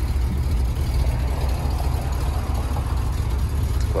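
1974 Ford F250 pickup's engine idling with a steady, even low rumble.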